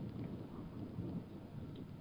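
Faint, steady background noise, mostly low in pitch, with no distinct events.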